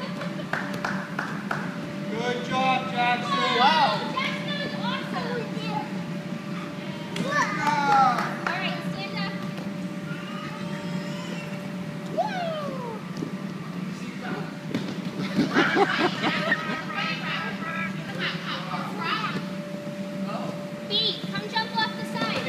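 Young children's voices calling out and shouting in scattered bursts during play, over a steady low hum.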